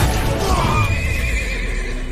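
A horse whinnying as it rears: a high, wavering call that starts about half a second in and lasts about a second and a half, over music and a low rumble.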